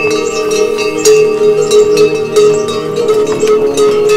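Metal bells on pack yaks clanking and ringing irregularly as the animals walk past, with the strikes overlapping into a sustained ring.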